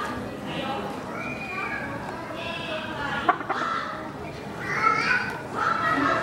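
Background chatter of several people, children's voices among them, with one sharp click about three seconds in.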